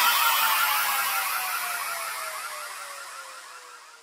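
Electronic downsweep in a DJ mix: a single tone slides slowly down in pitch under a fast repeating chirp, with no beat or bass, fading out steadily over about four seconds.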